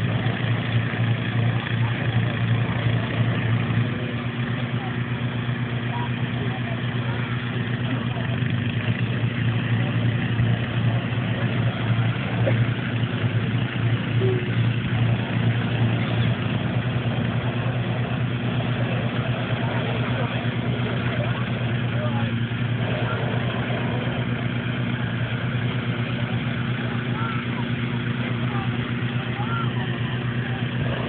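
Balloon inflator fans running steadily, their petrol engines giving a constant low drone as they blow cold air into hot air balloon envelopes lying on the ground.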